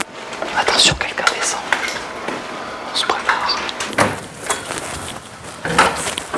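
Hushed voices and whispering among a group of people in a small room, with scattered knocks and clicks of people shifting and handling gear.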